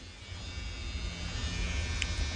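A steady low buzzing hum with faint hiss above it.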